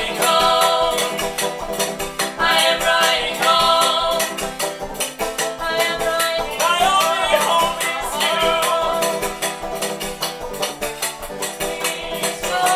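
Folk song played on a banjo and a washboard, the washboard scraped in a steady rattling rhythm under the picked banjo, with voices singing over them.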